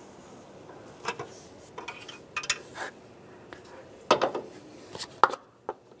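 Light plastic clicks and clatters as a power steering fluid reservoir cap is unscrewed and lifted off and a plastic funnel is set into the filler neck. The sharper knocks come about four and five seconds in.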